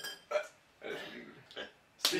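A few short, throaty non-speech vocal sounds from a person with a jelly bean in their mouth, like a burp or hiccup, with quiet gaps between them.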